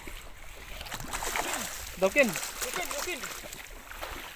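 Shallow seawater splashing and sloshing as someone wades through it. A voice speaks briefly around the middle.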